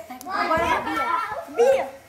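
A group of children's voices talking and calling out over one another during an outdoor game, with one louder call near the end.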